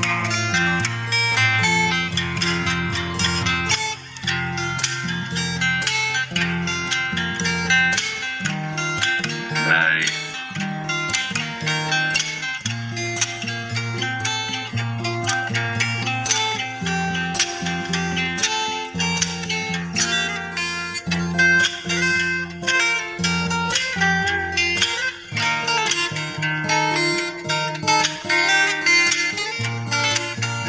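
Solo acoustic guitar played fingerstyle: plucked melody notes over a steady bass line, with frequent sharp percussive strikes.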